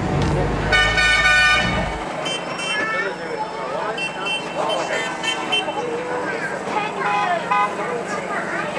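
A horn sounds one steady toot of about a second near the start, over the low rumble of the moving tram. The rumble cuts off about two seconds in, leaving chatter and high-pitched calls from people.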